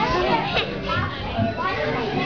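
Young children's voices chattering and calling out over one another as they play.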